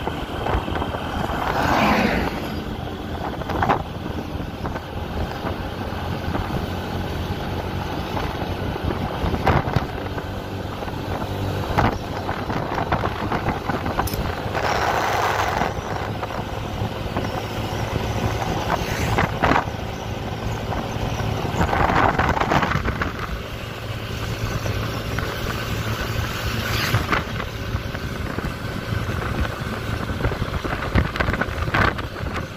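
Motorcycle engine running steadily while riding at road speed, with irregular gusts of wind rushing over the microphone every few seconds.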